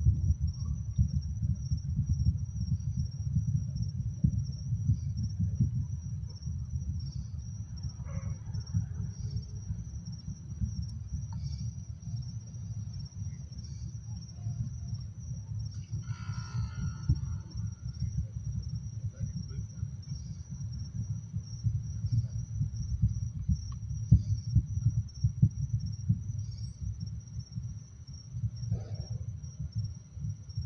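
Crickets chirping in a steady high trill over a continuous low, crackling rumble.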